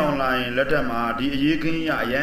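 A man's voice with long drawn-out, sing-song pitches that glide slowly up and down, without a break.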